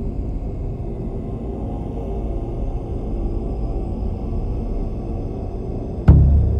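Dark ambient background music: a steady low rumbling drone with faint held tones above it.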